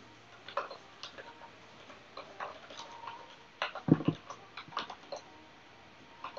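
Computer keyboard typing: irregular key clicks, with a louder knock just before four seconds in.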